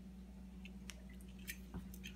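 Faint, scattered small clicks from a refrigerator thermostat being handled in the fingers, over a steady low hum.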